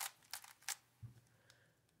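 3x3 speed cube's plastic layers being turned by hand: a few faint, quick clicks in the first second as the last turns of a PLL algorithm bring the cube to solved.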